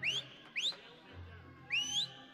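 Three short whistles, each gliding quickly upward in pitch: one at the start, one about half a second in and one near the end, over faint backing music.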